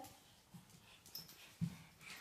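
Faint handling sounds of a dog licking and nuzzling a baby's face, with a few soft low knocks, the loudest about three-quarters of the way through.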